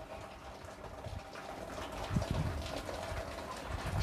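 Faint scratching strokes of a dry-erase marker writing on a whiteboard, over low room noise.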